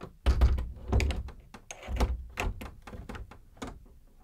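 Doors being shut and locked, as a radio-play sound effect: several heavy thuds in the first half or so, with sharper clicks and clunks of latches and bolts throughout.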